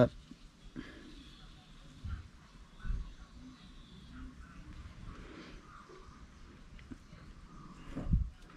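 Quiet handling sounds of an aluminium engine case cover being lined up by hand over the engine's ignition-side cover, with soft bumps about two and three seconds in.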